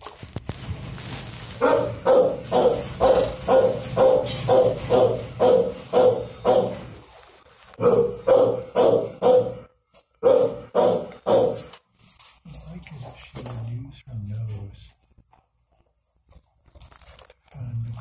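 A dog barking in three quick runs of about two barks a second, with short pauses between the runs, then some softer, lower sounds.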